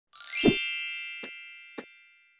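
Logo intro sound effect: a quick rising shimmer that lands on a low thump and a bright chime, which rings out and fades slowly. Two short clicks follow in the second half.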